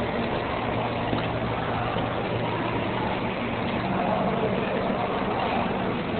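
Steady noise and low hum of a New York City subway train, even throughout with no sharp knocks or breaks.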